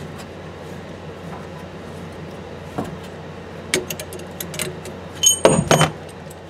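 Small metallic clicks from a tubing cutter working on copper pipe, then about five seconds in a brief, louder metallic clatter with a ringing tone as the cut copper pipe and the old shut-off valve come free.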